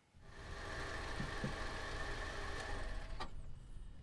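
Car engine running steadily, then dying away, followed by a single sharp click.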